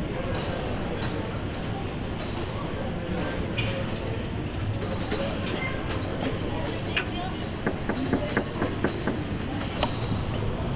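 Bicycle with a front carrier rack rattling over cobblestones against a steady street rumble. A run of sharp clicks and knocks comes in the second half, thickest near the end.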